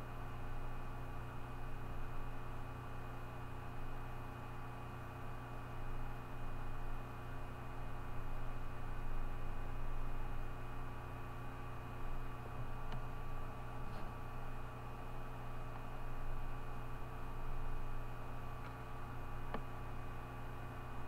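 Steady electrical hum and hiss from the recording setup, with several fixed steady tones and a faint pulsing low drone. A few faint clicks come in the second half.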